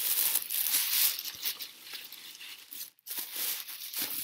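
White tissue paper packing rustling and crinkling as it is pulled out of a box by hand. The rustle is loudest in the first second or so, and it cuts out briefly just before three seconds in.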